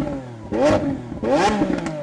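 An engine revving in a series of short throttle blips, each a quick rise in pitch that falls back, coming less than a second apart, used as a sound effect in an intro logo sting.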